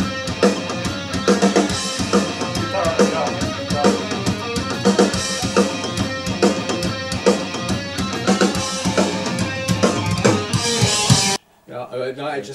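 A metal band's song in progress played back over studio control-room monitors, the drum kit loud in the mix with bass drum and cymbal strikes driving it. The playback stops abruptly near the end.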